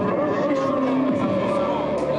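Live band music heard from the audience: sustained, droning tones with several steep downward-sliding pitch sweeps.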